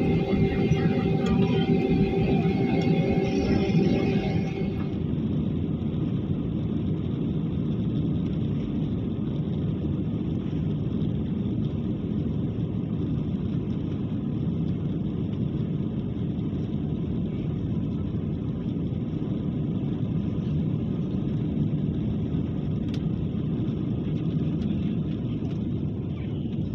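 Airbus A320-family airliner's jet engines heard from inside the cabin during the takeoff roll: a steady deep rumble of engines and wheels on the runway as it speeds up. Some higher steady tones sound over it in the first few seconds and drop out about five seconds in.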